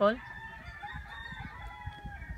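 A rooster crowing: one long drawn-out crow, faint beside the voice, held for most of the two seconds.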